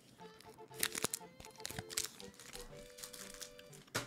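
A chocolate bar's wrapper crinkling in a few short crackles while it is handled and opened, the loudest about a second in, over soft background music.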